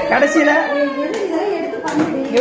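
Several people talking over each other in a small room, with two sharp hand claps, about a second in and near the end.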